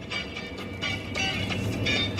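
TV cartoon theme song music playing inside a moving car, over a steady low road rumble.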